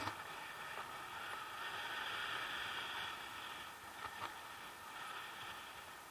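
Air rushing past an action camera on a paraglider in flight, a steady windy hiss that swells for a couple of seconds in the middle, with a couple of faint knocks about four seconds in.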